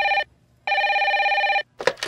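Desk telephone ringing: one ring ends just after the start and a second rings for about a second, with a warbling pitch. Near the end there is a short clatter as the handset is lifted.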